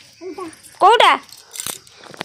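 A person's voice: a faint short sound, then one loud call about a second in whose pitch falls, followed by a sharp click.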